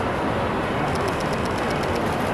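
Rapid bursts of camera shutters clicking, about ten clicks a second, starting about halfway through, over a steady hubbub of outdoor crowd noise.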